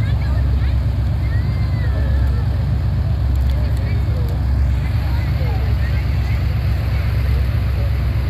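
Monster truck's engine running with a steady low rumble, with voices of onlookers in the background.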